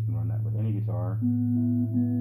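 A single electric guitar note through a modelling rig, starting a little past halfway and ringing on steadily, with a steady low electrical hum underneath.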